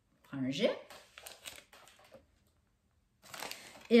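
A paper price ticket crinkling as it is handled: a few light rustles early on, then a longer rustle just before the end.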